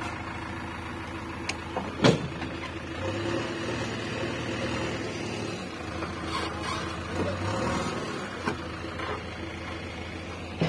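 JCB backhoe loader's diesel engine running steadily while the backhoe arm is worked, with a sharp knock about two seconds in.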